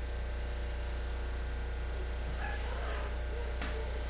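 Steady low electrical hum with light hiss on a home-video recording. About two and a half seconds in there is a faint, brief wavering sound, and a single click comes shortly before the end.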